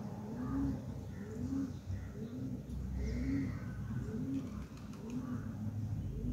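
A bird cooing, a low call repeated about once a second, with fainter higher chirps from other birds.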